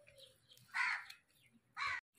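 A crow cawing twice, the second call near the end.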